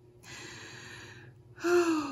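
A woman's long, breathy intake of breath, followed near the end by a voiced sigh that falls in pitch as she lets it out, overcome with emotion.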